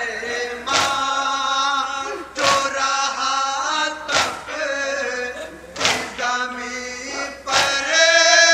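A group of men chanting an Urdu nauha (mourning lament) in chorus, with the crowd's hand-on-chest matam strokes landing together in a steady beat, five strokes about 1.7 seconds apart.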